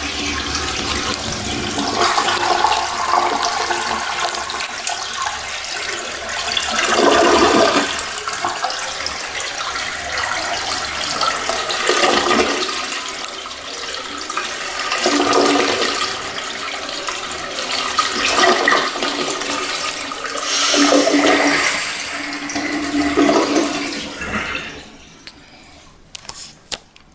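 A 1987 INAX (LIXIL) siphon-jet toilet flushing from a flush valve: water rushes and swirls through the bowl for about 25 seconds, swelling in repeated surges, then dies away just before the end.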